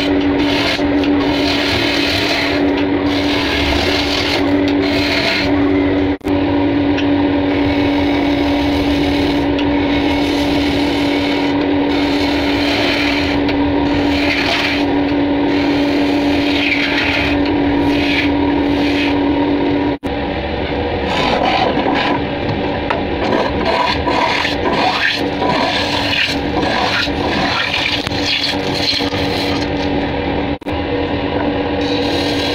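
Wood lathe running with a steady hum while a hand turning tool cuts the spinning wood blank, a continuous shaving, scraping sound. About two-thirds of the way through the hum stops suddenly and the cutting becomes more uneven.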